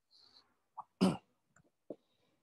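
A single short cough about a second in, with a few faint small noises around it.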